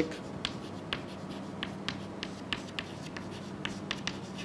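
Chalk writing on a blackboard: a string of quick, irregular taps and short scratches as letters are written, over a faint steady hum.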